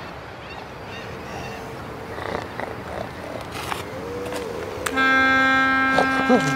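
A factory works siren starts abruptly about five seconds in and holds one loud, steady pitch, the signal that marks the start of the morning. Before it there is only faint background noise.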